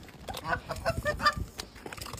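Canada goose giving a quick run of short honks, about six within a second, starting about a third of a second in.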